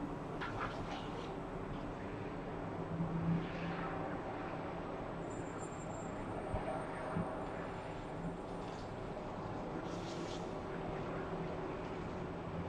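Outdoor ambience of distant road traffic: a steady hum, with a brief louder swell about three seconds in.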